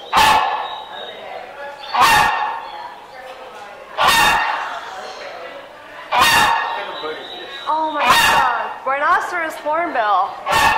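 Hornbill giving loud, short, bark-like calls about every two seconds, five in a row, each echoing in the enclosed aviary room. In the last couple of seconds, wavering calls that slide up and down in pitch come in over them.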